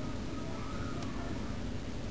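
Steady low hum and hiss of background noise, with no distinct sound event.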